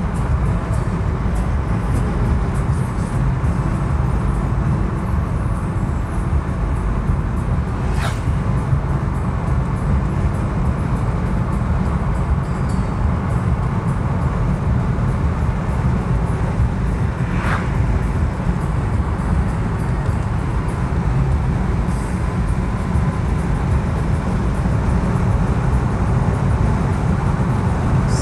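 Steady low rumble of a car driving at highway speed, heard from inside the cabin: tyre and road noise with the engine running. Two brief sharp sounds cut through, about eight and seventeen seconds in.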